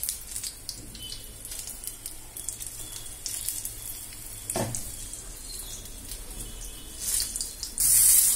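Batter-coated green chillies (mirchi bajji) deep-frying in hot oil: a steady fizzing crackle of bubbling oil with many fine pops. A single dull knock comes about halfway through, and the crackling gets louder near the end.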